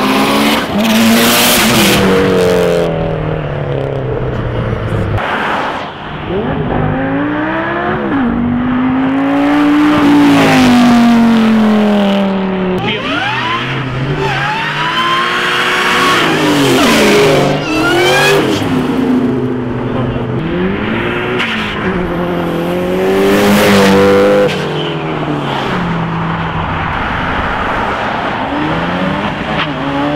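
A string of performance cars accelerating hard past one after another, engines revving up and dropping back through gear changes. Around the middle, a Ford Mustang SVT Cobra breaks traction with a squeal of tires.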